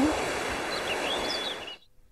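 Steady outdoor background noise with a few faint bird chirps about a second in, cutting off suddenly near the end.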